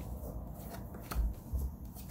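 A deck of reading cards being shuffled and handled: a string of light, quick clicks with a soft thump a little past halfway.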